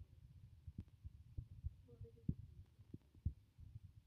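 Quiet room tone: a faint low rumble with several soft, irregular thumps.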